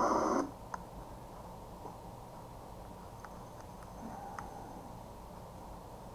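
A weather radio's broadcast voice cuts off suddenly about half a second in. After that there is only low room noise, with a few faint clicks and handling sounds.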